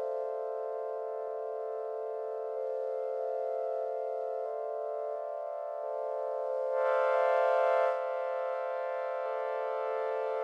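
Keyboard synthesizer holding sustained chords that change a few times. About seven seconds in, the chord swells brighter and louder for about a second.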